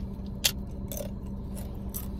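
Tortilla chip being bitten and chewed: one sharp crunch about half a second in, then a few fainter crunches, over a steady low hum. The chips are close to stale.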